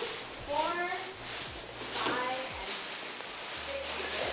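Indistinct speech: voices talking nearby, with no other sound standing out.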